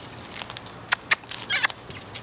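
Puppies tussling over a dry leaf on leafy ground: a few sharp crackles, then a short rustling burst near the end.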